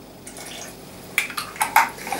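A lemon half squeezed by hand over a Thermomix mixing bowl, its juice dripping into the bowl: a soft wet rustle, then a quick run of four or five short wet clicks in the second half.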